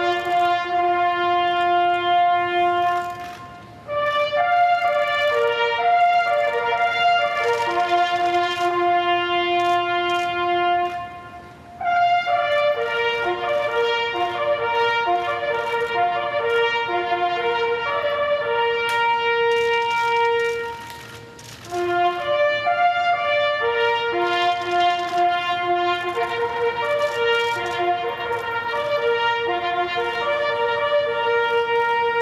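A Royal Marines bugler sounds a ceremonial bugle call. Long held notes are grouped into phrases, with short breaks about 4, 12 and 21 seconds in.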